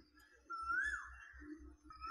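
A faint, high whistle-like note that swoops up and then drops, heard twice: about half a second in and again at the end, over a faint low hum.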